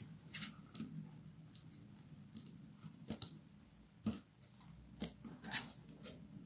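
Faint rustling with scattered light clicks and taps as artificial fabric leaves and a satin ribbon bow are handled and pressed onto a paper card.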